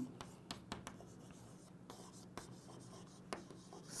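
Chalk on a chalkboard, faint scratching and light taps as words are written by hand, with short pauses between strokes.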